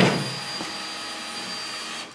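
Electric fan of a fake-fire flame effect running steadily: an even motor noise with a thin high whine over it, and a short knock right at the start.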